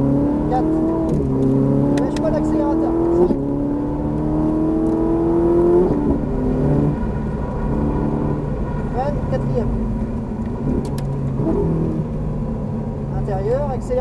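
Ferrari 458 Italia's V8 engine heard from inside the cabin under hard acceleration. Its pitch climbs steadily, broken by upshifts about one and three seconds in, then drops away about six seconds in as the car slows for the next corner.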